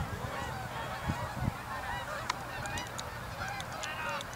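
A flock of geese honking as they fly, many short calls overlapping one another.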